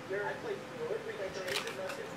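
A trading card being handled and moved, with a few crisp clicks and rustles near the end, over faint voices in the background.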